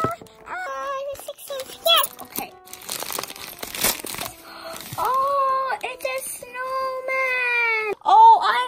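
Paper gift bag being crinkled and torn open, a stretch of rustling and crunching paper about two to four seconds in. Around it a voice sings notes, ending in long held tones.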